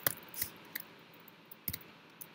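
Computer keyboard keys being typed: a handful of separate sharp clicks, the loudest at the start and a little before the end.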